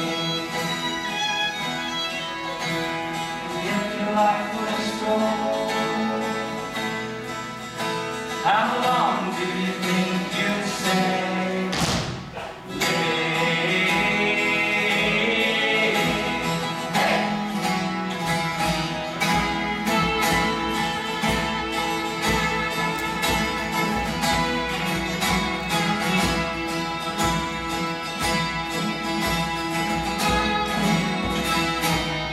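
Steel-string acoustic guitar strummed in an instrumental passage of a folk song, with further music behind it. The music drops away briefly about twelve seconds in, then comes back.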